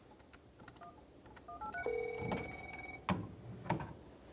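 A number is dialed on a telephone keypad: a few short beeps, then a quick run of four rising key tones. About a second of a steady ring tone made of several notes follows as the call comes through to the desk phone, and two sharp clicks come near the end.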